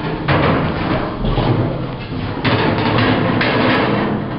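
Large metal trash can being tipped and flipped over: continuous clattering and scraping, with a low thud about a second in and sudden louder surges around the middle and near the end.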